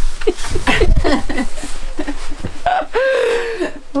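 A man laughing in short bursts, with rustling as he moves about a second in. Near the end comes a long drawn-out groan as he heaves himself up off the floor.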